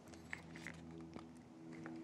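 Faint handling noises from hands working on a bike in a repair stand, with a few light clicks over a low steady hum.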